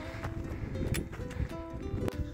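Background music: a simple melody of short held notes over a low rumble, with a few faint clicks.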